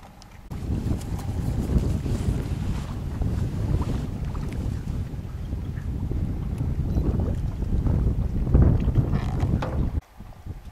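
Wind buffeting the microphone on a small boat moving across a lake: a loud, uneven low rumble that starts about half a second in and cuts off at the end.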